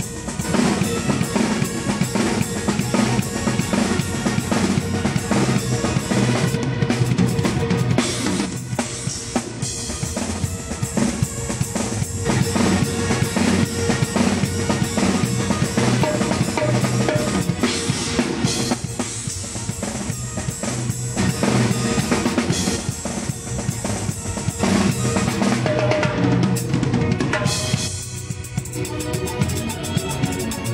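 Drum kit with timbales played live: dense, rapid strikes on drums and cymbals, close up and loud, over the rest of the band's music.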